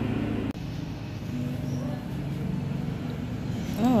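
Steady low motor hum that breaks off suddenly about half a second in, followed by a fainter, even background noise of what sounds like passing traffic.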